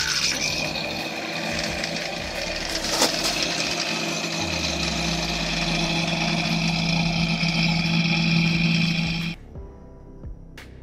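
Electric submersible pump running steadily, a constant motor hum with a hissing rush of water and air over it, stopping abruptly near the end.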